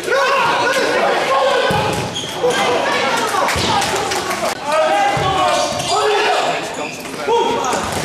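Futsal match play in a sports hall: players' shouts mixed with ball kicks and shoe squeaks on the hall floor, echoing in the large hall.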